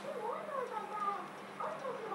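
A high-pitched voice, whining or sing-song, gliding up and down in pitch without clear words, over a steady low hum.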